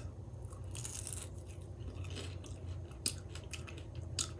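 Close-up mouth sounds of biting into and chewing a breaded, fried jalapeño cheddar bite. There are a few sharp wet clicks near the end, over a steady low hum.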